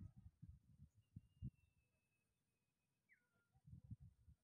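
Near silence, broken by faint short low bumps in the first half and again near the end, with a faint thin high tone about a second in and a brief faint falling whistle just after three seconds.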